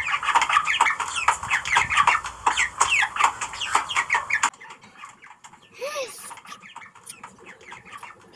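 A flock of domestic hens clucking rapidly and continuously, many short calls overlapping. The clucking cuts off abruptly about four and a half seconds in, leaving a quieter stretch with one short call about six seconds in.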